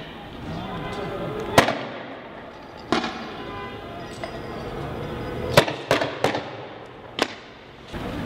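Six sharp bangs of riot-control weapons being fired, over a background of voices. The first comes about one and a half seconds in and is the loudest, another near three seconds, a quick run of three in the middle, and a last one near the end.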